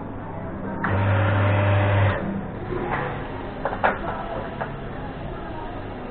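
An electric motor at an espresso bar runs with a steady hum for about a second, then stops. A few sharp metal clicks and knocks follow as the portafilter is handled.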